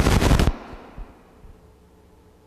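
A dense, rapid crackle that cuts off abruptly about half a second in, leaving a reverberant tail in a large hall, a faint steady hum and a few faint clicks.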